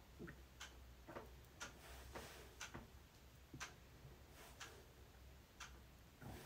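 Near silence, with faint, even ticks about once a second, like a clock ticking in a quiet room.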